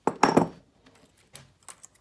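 A sharp metallic clatter of small steel parts and pin punches against a steel vise, ringing briefly, followed by a few light clinks as the punches are handled.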